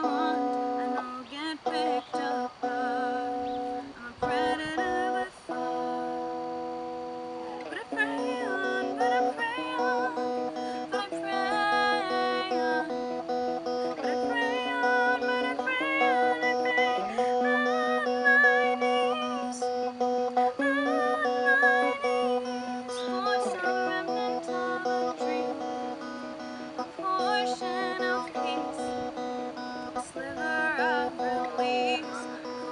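Electric guitar played clean through a small practice amplifier, accompanying a woman singing a slow song with vibrato on held notes.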